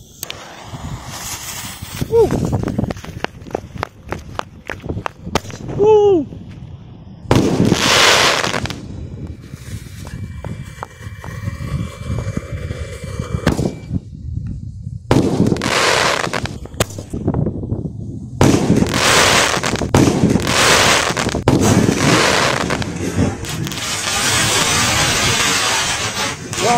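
A Comet "Thunder" firework tube going off. The first several seconds are rapid crackling, then comes a loud rushing burst. After a lull, shot after shot of launches and bursts follow, almost continuous over the last seven seconds.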